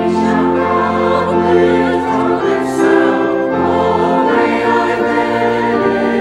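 Church choir and congregation singing a hymn together, with steady held low accompaniment notes that change every second or two.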